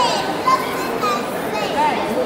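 A crowd of children chattering and calling out all at once, with short high-pitched shouts at the start, about half a second in and near the end.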